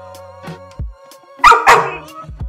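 Labrador puppy barking twice in quick succession, about a second and a half in.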